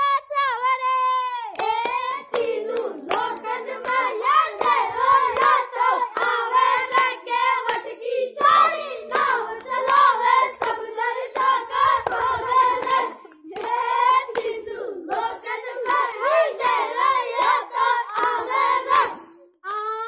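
Boys singing a dangal folk song in long, wavering held lines, with steady rhythmic hand clapping keeping the beat. The song breaks off briefly twice, once about two-thirds of the way through and again near the end.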